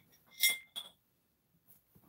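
Glassware clinking as it is moved: a tap at the start, then a louder clink with a brief ring about half a second in, and a smaller one just after.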